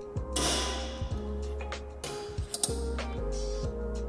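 Background music with handling noise from a halogen H7 bulb being pressed down and pulled out of its plastic headlight socket. There is a scraping rattle in the first second, then a few sharp clicks about two and a half seconds in.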